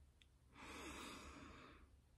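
A soft, breathy exhale like a sigh, lasting a little over a second and starting about half a second in.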